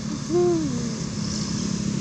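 Intercity bus engine running as the bus passes close through a tight bend, a steady drone. About a third of a second in comes a short hoot that rises and then falls in pitch; it is the loudest sound.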